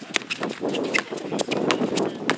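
A basketball being dribbled on an outdoor hard court, with players' shoes scuffing and stepping: an irregular run of sharp knocks.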